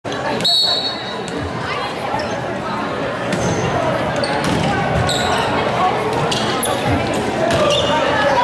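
Indoor volleyball rally on a hardwood gym court: the ball being struck several times in sharp, echoing smacks, with brief high squeaks from sneakers on the floor, over steady crowd chatter in a large hall.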